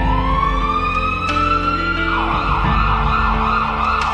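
An emergency-vehicle siren wails with a slow rising tone, then switches about two seconds in to a fast warbling yelp. Background music with steady held notes plays underneath.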